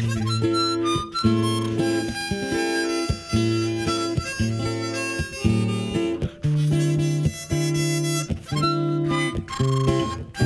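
Harmonica playing an instrumental break between the sung verses of a song, over acoustic guitar. It is a string of changing notes, each held about half a second to a second.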